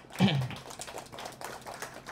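A brief falling vocal hum from a man, then a run of light, irregular clicks and taps.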